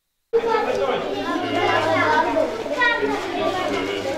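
A group of children chattering, many voices overlapping at once. It cuts in suddenly from dead silence a moment after the start.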